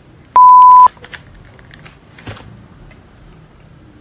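A single loud, steady electronic beep tone about half a second long, starting a third of a second in, a censor-style bleep added in editing; afterwards only a few faint clicks.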